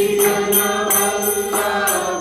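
Devotional kirtan chanting: voices holding long notes, with small hand cymbals striking a steady beat.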